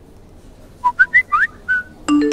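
A quick run of about five short whistle notes, starting about a second in, jumping up and down in pitch with one note gliding upward.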